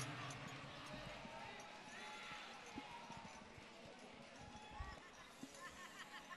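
A near-quiet pause: faint room ambience with distant murmured voices and a few soft knocks.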